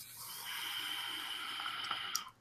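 A long drag on a vape's rebuildable tank atomizer on a mechanical mod: a steady hiss of air drawn through the tank, with a thin steady whistle joining about half a second in. The draw is nice and quiet.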